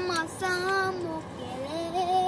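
A child singing a few long held notes without clear words, the last one sliding up before it holds.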